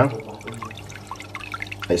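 Internal aquarium power filter running: a steady low hum with water trickling and dripping from its outflow at the tank surface.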